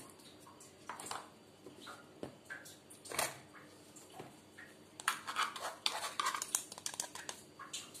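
Light clicks and taps of small plastic containers and utensils being handled while salt and vanilla are added to a pot of coconut milk. There is a sharper knock about three seconds in and a quick run of clicks in the second half.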